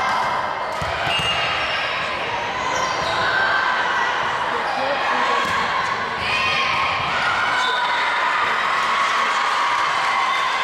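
Many voices of players and spectators echoing in a school gym. A volleyball is bounced on the hardwood floor, with a few dull thuds in the first second or so.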